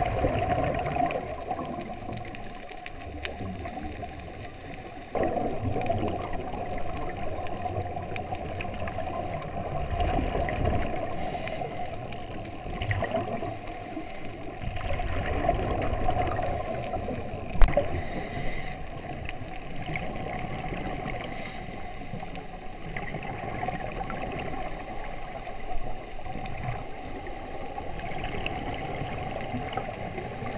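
Muffled underwater sound of scuba diving: water rushing and divers' exhaled regulator bubbles gurgling, swelling and easing every few seconds. One sharp click rings out about two-thirds of the way through.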